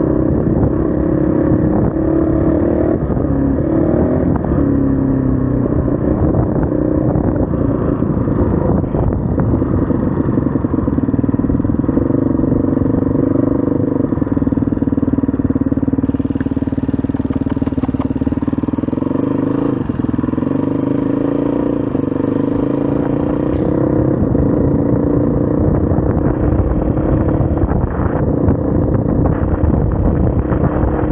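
SWM RS500R enduro motorcycle's single-cylinder four-stroke engine running continuously under a riding load, its note rising and falling as the throttle is worked, with a dip in pitch about twenty seconds in.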